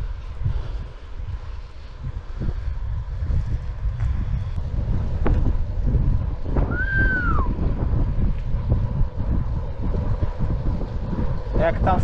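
Wind buffeting the action camera's microphone while riding a bicycle at speed, a constant fluctuating low rumble. A brief whistle-like tone rises and falls about seven seconds in.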